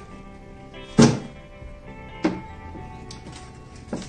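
A cardboard shoebox set down on a table with a thunk about a second in, then two lighter knocks as things are put down, over soft background music.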